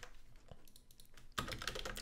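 Computer keyboard keystrokes: a few scattered clicks, then a quicker run of typing in the second half, faint.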